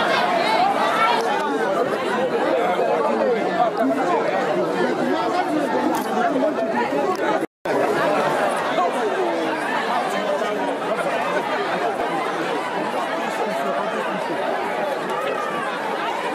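Crowd chatter: many people talking at once, no single voice standing out. The sound cuts out for a split second about halfway through.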